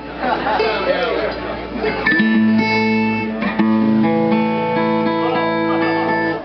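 Acoustic guitar strummed: a chord is struck about two seconds in, and held chords then ring out for the rest of the time.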